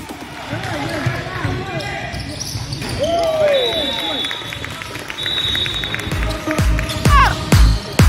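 Basketball bouncing on a hardwood gym floor amid players' voices and short knocks of play, with dance music with a steady beat coming back in about six seconds in.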